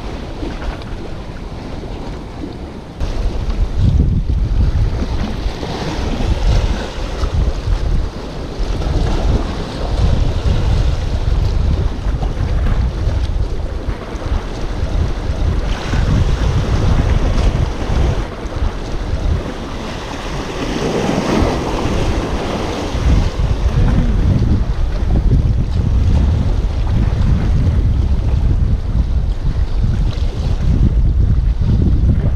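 Wind buffeting the microphone, a heavy fluttering rumble that grows louder about three seconds in, over the steady wash of sea waves against the breakwater rocks.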